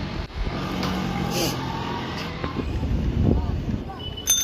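Street traffic heard from a moving vehicle: a steady engine hum over road noise, with distant voices.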